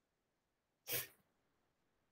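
One short, sharp burst of breath noise from a person close to the microphone, about a second in and lasting about a third of a second.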